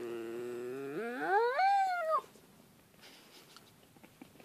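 German Shepherd puppy howling: one long howl that holds low and level, then rises steeply in pitch and falls off, ending about two seconds in.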